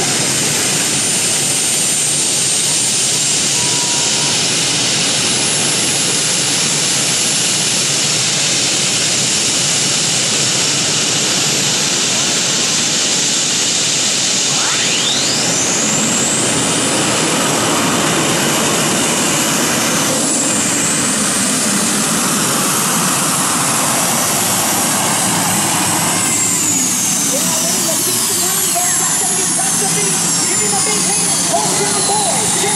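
Turbine engines of a modified pulling tractor running loud and steady. About halfway through, a high whine glides sharply up as the turbines spool up. It holds high and then winds back down near the end.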